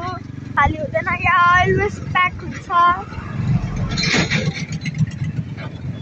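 Steady low rumble of engine and road noise from a moving vehicle on the road, with a short rush of noise about four seconds in.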